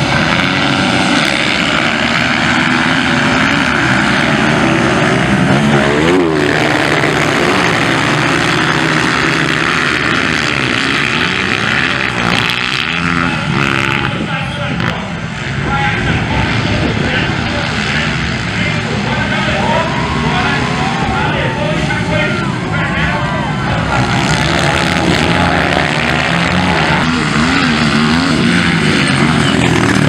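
Small youth motocross bikes revving hard and racing on a dirt track, a pack leaving the starting gate together and then individual bikes passing. Their engines rise and fall in pitch as the riders open the throttle and shift.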